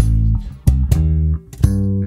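Funk band playing the closing bars of a song: held bass and chord notes punctuated by about four sharp drum hits, then the music stops abruptly.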